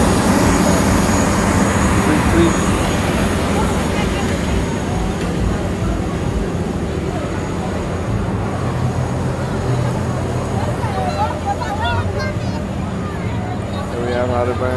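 A loud generator running with a steady low drone. The drone is loudest at first and fades gradually, and crowd voices mix in near the end.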